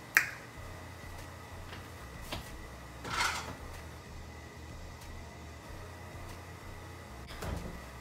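Small kitchen handling noises: a sharp click just after the start, a faint knock, and a short scrape or clatter about three seconds in, over a steady low hum.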